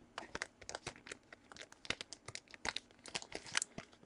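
Faint, irregular crinkling and clicking of trading cards and their plastic holders being handled.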